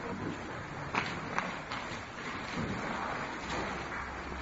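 Soft rustling and a couple of small clicks of Bible pages being turned in a quiet room, over low room noise.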